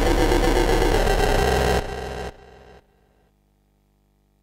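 Loud, dense electronic music from a live synth-and-sequencer jam, which drops out in three steps about two, two and a half and three seconds in, leaving near silence.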